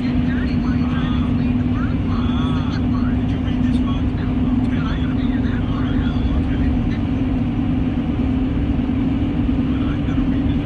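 Steady engine and road drone heard from inside a moving vehicle's cab, with a constant low hum throughout.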